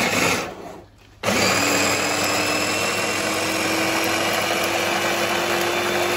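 Electric mini chopper motor chopping coriander, green chillies and garlic with a little water. After a short burst of noise at the start and a pause of about a second, it runs steadily for about five seconds, its hum rising slightly in pitch.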